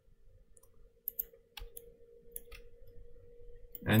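Several scattered clicks from a computer mouse and keyboard, over a faint steady hum. A voice begins at the very end.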